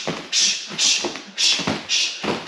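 Rapid, sharp hissing exhales ("tss"), about two a second, as kickboxers breathe out with each strike while shadowboxing.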